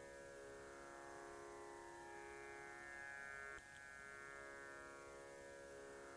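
Faint Indian-style meditation background music: a steady drone of sustained, layered string tones, with a small click about three and a half seconds in.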